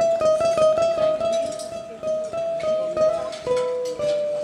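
Solo ukulele played live: a quick picked melody of repeated high notes, dropping to a lower ringing note near the end.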